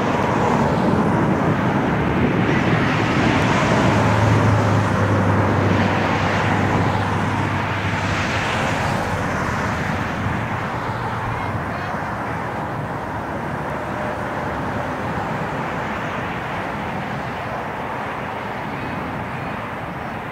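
Jet airliner engine noise: a steady rushing sound, loudest over the first several seconds, with a low hum for a few seconds in the middle, then slowly easing off.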